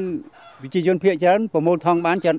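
Speech: a voice talking in Khmer in short, rapid syllables, carrying on from the talk just before.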